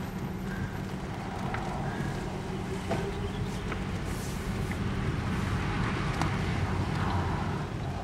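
Car engine and tyre noise heard from inside the cabin as the car drives on a wet road: a steady hum with tyre hiss, a little louder from about three seconds in.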